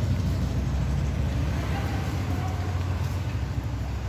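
A steady low rumble of a running engine, with faint voices in the background about halfway through.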